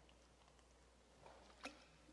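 Near silence: faint room tone with a low steady hum, and a faint click near the end.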